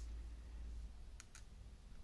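Two quick small clicks a little past a second in, as plastic fuse beads are set with tweezers onto the pegs of a plastic pegboard, over a faint low hum.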